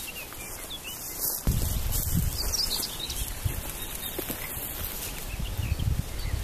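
Small birds chirping in the background, with an irregular low rumble and rustle of someone walking through tall grass starting about a second and a half in.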